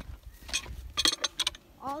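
Quick metallic clicks and rattles of a hand tool working the hinge hardware of a steel tube farm gate, one short run about half a second in and a denser run about a second in.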